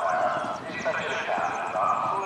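Indistinct voices talking in the background, too unclear for any words to be made out.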